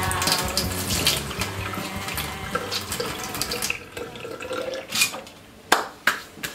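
Kitchen tap running into a stainless steel sink while dishes are scrubbed, with small clinks and knocks. The running falls away after about four seconds, leaving a few sharp knocks, the loudest near the end.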